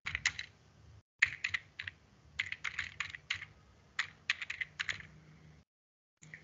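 Typing on a computer keyboard: irregular key clicks, some single and some in quick flurries, as a word is typed in.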